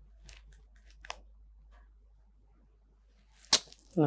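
Faint scattered rustles and soft ticks, then a single sharp click about three and a half seconds in.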